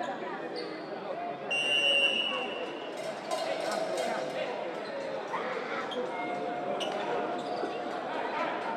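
Indoor handball game play: a referee's whistle blows once for about a second, a second and a half in, the loudest sound, followed by a ball bouncing on the court floor, over voices in the hall.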